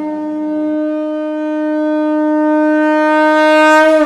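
A conch shell (shankha) blown in one long held note that swells louder toward the end, over the tail of a music bed that stops about a second in.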